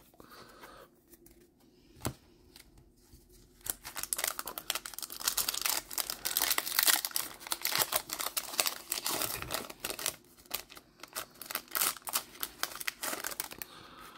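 Baseball card pack wrapper being torn open and crinkled by hand: a dense crackling that starts about four seconds in and runs nearly to the end. A single sharp click comes about two seconds in.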